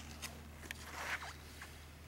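Faint handling noise as the camera is moved into the car's cabin: a couple of light clicks, then a brief rustling swish about a second in, over a low steady hum.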